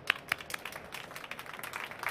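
Applause: many hands clapping, with two sharper, louder claps near the start.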